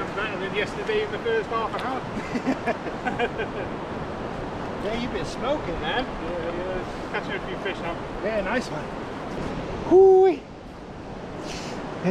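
Men talking over a steady wash of sea surf and wind on the microphone. About ten seconds in there is one short, loud sound of steady pitch, after which the wind noise drops.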